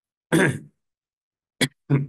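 A man clears his throat once, then gives two short coughs near the end.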